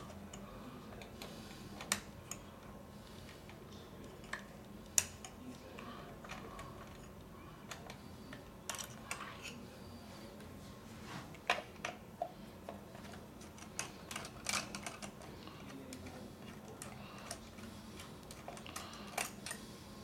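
Scattered light metallic clicks and taps from a screwdriver loosening the screws that hold the stainless steel lever handles of a glass door patch lock, over a faint hiss.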